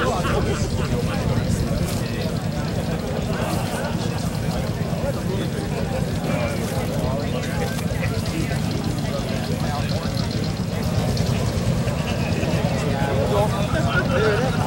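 Background chatter of several people talking, over a steady low rumble.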